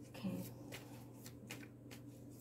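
A deck of tarot cards being shuffled and handled by hand: a faint run of short, crisp card flicks and riffles.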